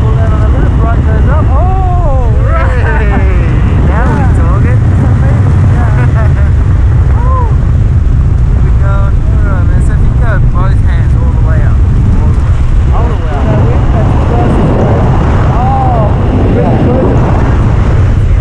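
Rushing freefall wind buffeting the camera microphone in a loud, steady rumble, with voices crying out over it now and then.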